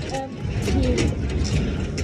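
Footsteps on metal checker-plate stairs: irregular clanks and clicks over a noisy fairground crowd.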